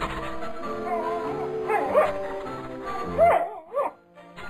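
Background music with a cartoon dog's voiced yips and whines: short calls bending up and down in pitch, about two seconds in and again near the end.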